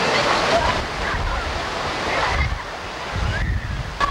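Steady rushing, splashing water, with wind buffeting the microphone in low rumbles and faint distant voices.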